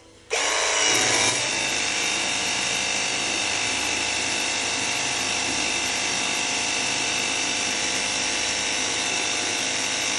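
Cordless 20 V battery pressure washer switching on just after the start and running steadily. Its electric motor and pump whine, with the hiss of the water jet spraying into a bucket of water. It is a little louder for the first second, and the unit is still running after more than ten minutes on one battery.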